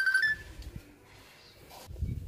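Hill myna giving a steady, high, pure whistle that ends with a short upward step about a quarter second in, then only low background noise.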